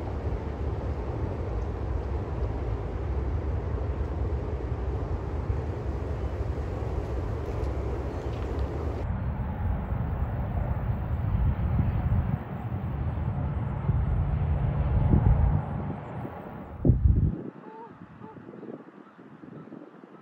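A freight train crossing a bridge: a steady low rumble that fades away after about 16 seconds. A brief loud thump comes about 17 seconds in.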